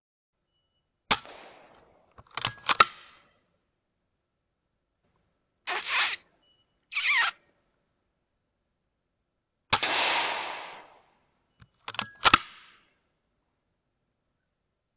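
A Weihrauch HW100 .22 pre-charged pneumatic air rifle fired several times, each shot a sharp crack with a short decay. Some shots are followed closely by further clicks and knocks, and two softer rushing bursts come midway.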